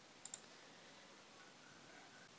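Near silence with a faint double click about a quarter second in: a computer mouse button pressed and released.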